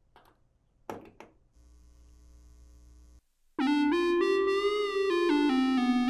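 A single click about a second in, as a patch cable's plug goes into a jack on an analog modular synthesizer. After about three and a half seconds a held synthesizer tone starts, bright and buzzy, and its pitch shifts up and down in small steps as it is transposed.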